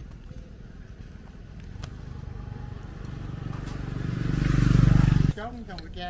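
A small motorbike engine running and growing steadily louder, as if drawing near. It cuts off abruptly a little after five seconds in.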